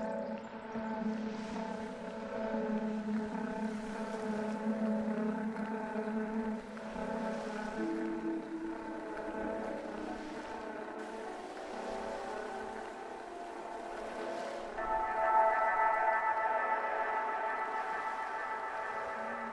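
Ambient drone soundtrack of long, overlapping sustained tones. The tones shift about halfway through, and a brighter, louder layer of tones comes in near the end.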